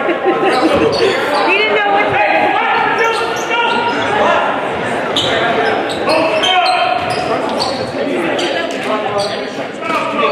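Basketball bouncing on a hardwood gym floor in short, sharp thuds, over constant chatter and calls from many voices in a large hall.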